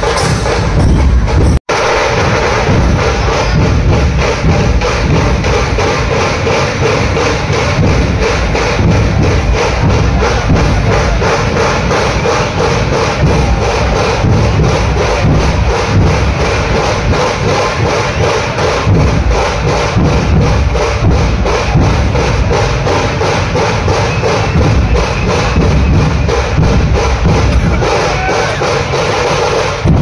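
Dhol-tasha drum troupe playing loud, continuous drumming, with a crowd's voices underneath. The sound cuts out for an instant about two seconds in.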